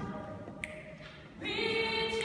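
Small group of women singing a cappella in a reverberant church: a held chord dies away early on, a short gap, then the voices come in together on a new sustained chord about a second and a half in.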